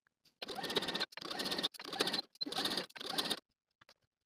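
Sewing machine stitching a seam in several short runs, each under a second, with the rapid ticking of the needle strokes.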